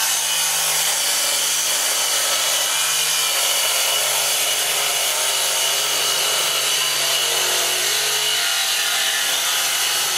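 Milwaukee cordless circular saw ripping a strip of wood, running steadily under load through one continuous cut.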